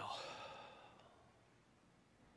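A man's audible exhale, a sigh that fades out over about the first second.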